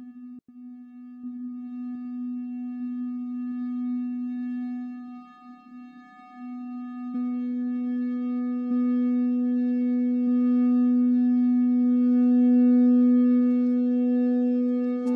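Ambient electronic drone from a looped track: one steady low tone that fades briefly around the middle. About halfway through, a second steady tone an octave higher joins it.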